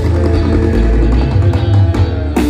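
A live band playing an instrumental passage: electric guitars over a heavy bass line, amplified through the stage sound system.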